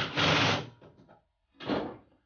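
Cordless drill running briefly as it drives a screw through a small steel plate into a wooden block, then stopping about half a second in.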